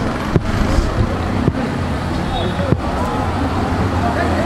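Street traffic noise: a steady low engine hum under a haze of road noise, with a few sharp knocks about a second apart and faint voices in the distance.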